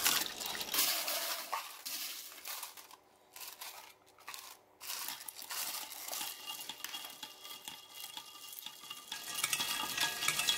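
Ice cubes clinking and splashing as they are poured into a glass pitcher of tamarind water. The sound cuts out briefly twice near the middle.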